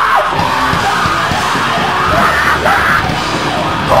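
Live screamo band playing loudly, with yelled voices over the music.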